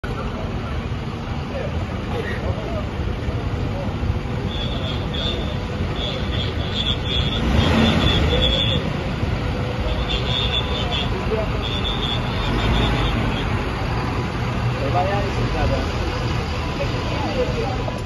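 Street noise of idling vehicle engines with people talking in the background. A high, thin tone pulses on and off for several seconds in the middle.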